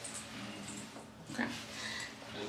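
A faint, muffled voice answering "okay" about a second in, heard over a low, steady room hum.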